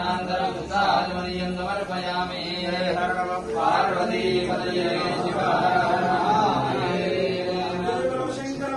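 Hindu mantra chanting, voices rising and falling in a continuous recitation over a steady low held tone.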